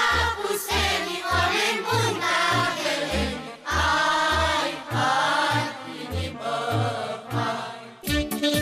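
Children's choir singing a Romanian folk song over a recorded backing track with a steady bass beat. The singing eases off near the end.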